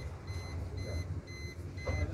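An electronic beeper sounds short, high beeps about twice a second over a steady low rumble.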